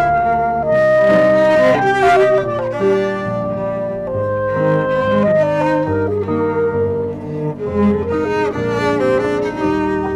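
Clarinet, cello and piano trio playing classical chamber music: long held melodic notes over piano chords.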